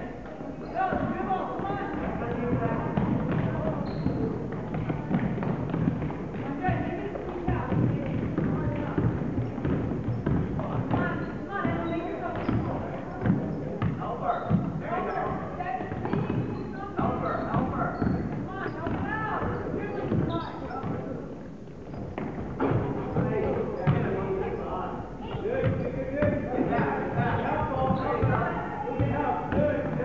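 Indistinct voices of players, coaches and spectators calling out throughout, in a gym, mixed with a basketball bouncing on the hardwood court and other short thuds.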